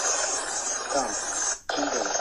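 Loud, steady rushing noise on the soundtrack of a replayed video clip, with a man's voice faint beneath it. It cuts out for a moment about one and a half seconds in, then resumes.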